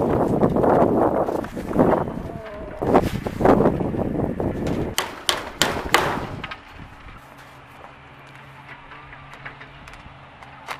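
Rustling and crinkling of a sheet of wrap being handled and cut against a chicken pen, loud for about six seconds, with a few sharp snaps around five to six seconds in. Then it drops to a quiet low steady hum.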